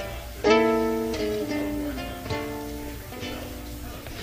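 Risa electric soprano ukulele: a chord struck about half a second in and left ringing, followed by a few single notes picked one after another.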